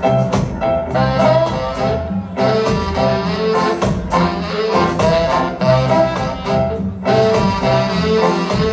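Live ska band playing an instrumental passage: saxophones carrying the tune over electric guitar, upright double bass and drums, with a steady, even beat.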